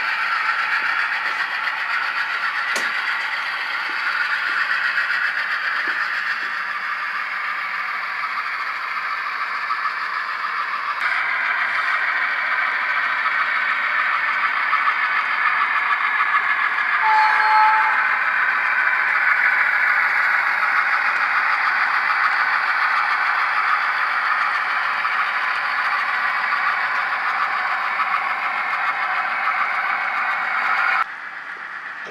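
HO scale model trains running on the layout, a steady rolling clatter and hiss of wheels and motors on the track. A brief tone comes in about halfway through.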